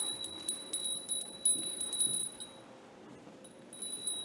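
A small arati hand bell rung over and over, its strikes quick and uneven over a steady high ring. The ringing thins out about two and a half seconds in and starts again near the end.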